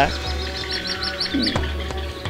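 A quick run of high bird chirps, about eight a second, that stops about halfway through, over background music with steady held notes.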